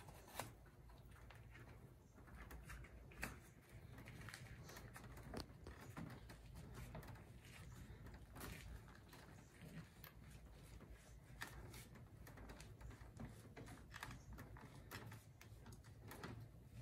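Mostly near silence, with faint rubbing and scattered light clicks and taps from hands twisting and pushing a foam grip cover onto a motorcycle handlebar grip.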